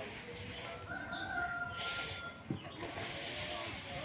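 A rooster crows once, starting about a second in and holding for over a second. Near the middle there is a scratchy scrape and a single knock.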